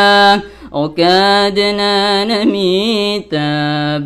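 A young man singing a Maranao Islamic devotional song, voice alone, in long held notes with wavering ornaments. He breaks off briefly for breath about half a second in and again near the end.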